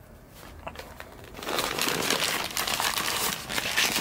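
White paper sandwich wrapper crinkling and rustling as it is folded around a sandwich by hand. It starts about a second and a half in and goes on steadily to the end.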